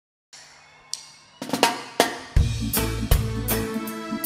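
Opening of a reggae song. A few separate snare and drum hits lead in, then the bass and full band come in a little over two seconds in and settle into a steady beat.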